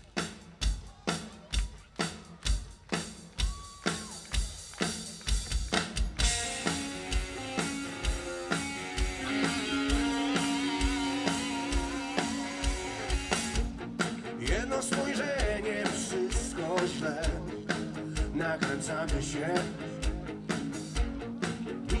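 Rock band playing live: a drum kit keeps a steady beat of about two hits a second, with guitar. Sustained chords come in about six seconds in, and singing comes in during the second half.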